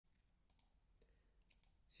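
Faint computer mouse clicks, each a quick press and release: one pair about half a second in and another about a second later.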